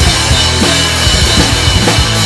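Acoustic drum kit played hard in a fast rock beat, with bass drum, snare and cymbals, along with the recorded pop-punk song's backing of guitars and bass. The playing is loud and unbroken.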